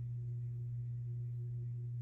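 A steady low hum, one unchanging tone with a fainter higher tone above it, and nothing else heard.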